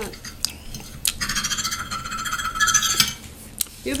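Metal fork scraping and clinking against a plate for about two seconds, with a few light taps before and after.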